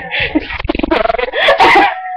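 Teenage girls laughing and squealing close to a webcam microphone, in choppy bursts that peak near the end, with low bumps from movement about a third of the way in.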